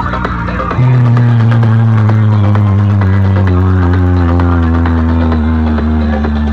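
Loud electronic music or a bass test track played through a large outdoor sound-system rig of horn loudspeakers and bass cabinets. A deep, sustained bass drone comes in suddenly about a second in and holds steady.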